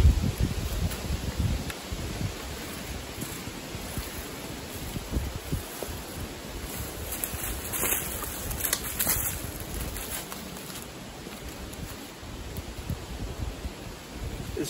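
Wind on the microphone with a low rumble, and footsteps crunching and rustling through dry fallen cottonwood leaves, with a few sharper rustles about halfway through.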